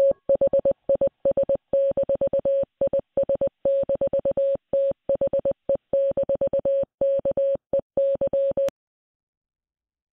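Morse code from an audio file: a single steady mid-pitched beep keyed on and off in short dots and longer dashes. It stops with a click about nine seconds in.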